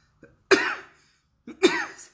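A woman recovering from COVID-19 coughing twice, about a second apart.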